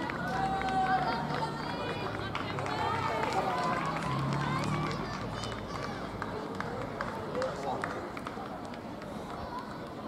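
Spectators' voices calling out and cheering over one another, dying down to quieter chatter about halfway through.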